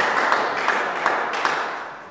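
A small group of spectators applauding a won point, single claps standing out about three times a second before it dies away near the end.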